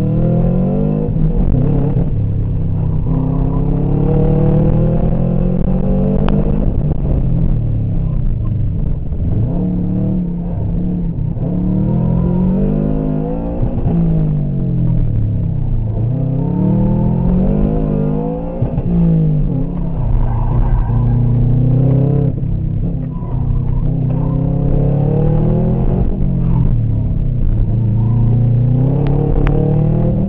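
Subaru flat-four engine heard from inside the cabin, revving up and dropping back over and over, about ten climbs in half a minute, as the car is driven hard through a cone course with manual gear changes.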